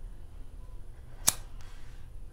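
A lighter struck once: a single sharp click about a second in, followed by a faint brief hiss.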